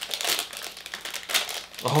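Plastic packaging crinkling and crackling irregularly as a bubble-wrapped bundle of candy packets is unwrapped and handled.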